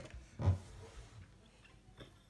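A single short spoken "oh", then quiet room tone with a few faint small clicks.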